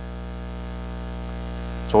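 Steady electrical mains hum with a stack of buzzing overtones, running evenly through a pause in the speech.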